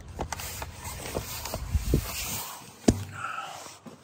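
A flattened cardboard box scraping and crinkling against pavement as a person crawls onto it, with irregular handling clicks and knocks. A sharp knock about three seconds in is the loudest sound.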